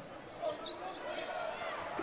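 Basketball being dribbled on a hardwood court under the low hubbub of an arena crowd.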